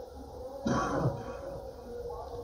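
A single cough from a worshipper in the congregation, sudden and lasting about half a second, a little over half a second in, over a steady low hum.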